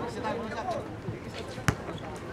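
A single basketball bounce on the hard court, one sharp slap about one and a half seconds in, over faint chatter.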